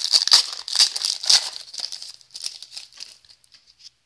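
A hockey card pack's wrapper being torn open and crinkled by hand: a dense crackling for the first second and a half, then sparser, fainter rustles.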